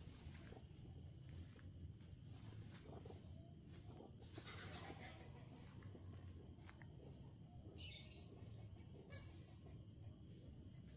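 Quiet outdoor background with a few short, high bird chirps, the loudest about eight seconds in.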